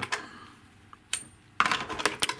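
Sharp plastic click of a battery's XT60 connector being pulled out of a hobby charger's input, followed near the end by a loud clatter of handling as the battery pack is moved on the desk.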